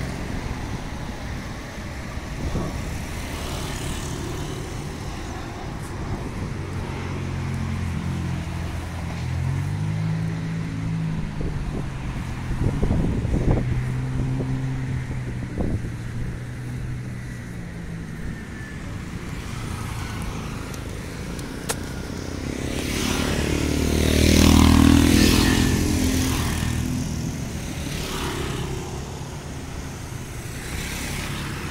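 Road traffic passing on a multi-lane highway, with a steady noise of engines and tyres. A vehicle passes close about 25 seconds in, the loudest moment, rising and then falling away.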